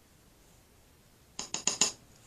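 A small jar of glitter rattled in the hand in four quick strokes, about seven a second, starting a little over a second in.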